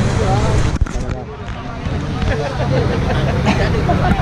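Men's voices talking over a steady low rumble, with a single sharp knock just under a second in.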